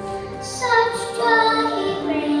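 A young girl singing a solo into a microphone, holding each note briefly and stepping up and down in pitch, over a musical accompaniment.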